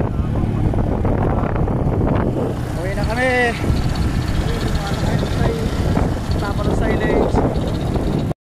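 Steady rumble of a vehicle driving along a gravel farm road, heard from on board in the open air. A person's voice cuts in briefly about three seconds in and again near the end.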